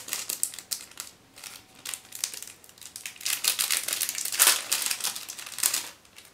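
Small clear plastic packet crinkling in the hands as a doll's pink pacifier is taken out of it. The crinkling comes in quick irregular crackles, sparse at first and thickest and loudest in the second half.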